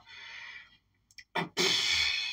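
A person's long breathy exhale, starting about one and a half seconds in after a short near-silent gap with a faint click.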